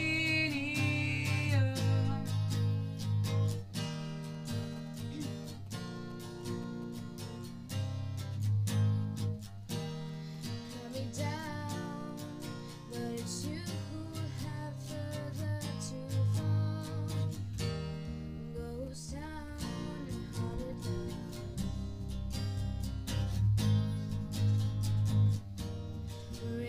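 Acoustic guitar strumming a steady chord accompaniment, with no lyrics sung.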